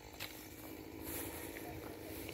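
Faint, steady sound of a distant chainsaw running.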